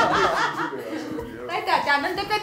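A few people chuckling and laughing amid talk, dying down about halfway through before voices pick up again.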